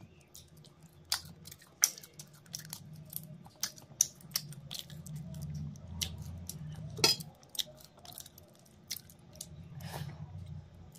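Close-miked mouth sounds of eating prawn curry and rice by hand: wet chewing with many sharp lip-smack clicks, the loudest about seven seconds in.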